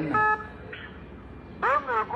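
Speech: a voice saying "good evening", with a brief steady electronic tone laid over it at the start. A low steady hiss follows until the voice comes back near the end.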